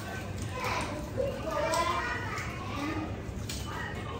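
Children's voices at play, with indistinct chatter and no clear words.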